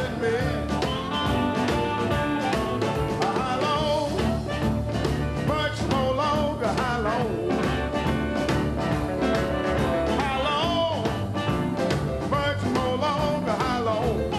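Live electric Chicago blues band playing a steady groove, with bass and drums under a lead line of bent notes.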